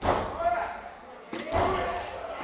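Two heavy thuds in a wrestling ring, one at the start and one about a second and a half later, with voices shouting around them.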